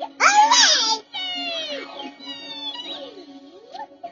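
High-pitched, squeaky cartoon-style voice sounds sliding up and down in pitch over a steady held musical note. The loudest is a rising squeal just after the start.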